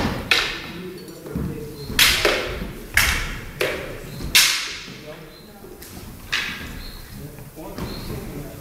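Steel backswords clashing in a bout: about seven sharp blade strikes in irregular quick exchanges, the loudest about two, three and four and a half seconds in, each with a brief ring and echo of a large hall.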